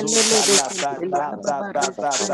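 A voice praying in tongues: a fast, unbroken run of syllables, opening with a long hissing 'sh' sound.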